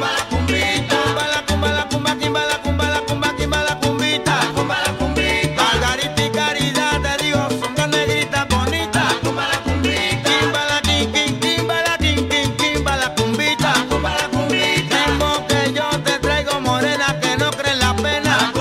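Salsa dura dance track playing at a steady, loud level, with a repeating bass line under dense percussion.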